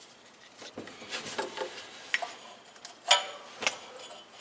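Inline spark tester and rubber plug-wire boot being pushed onto a spark plug by hand: scattered clicks and light rubbing, the loudest click about three seconds in.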